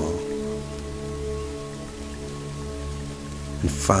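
Soft ambient music of steady held tones over a continuous bed of rain sound.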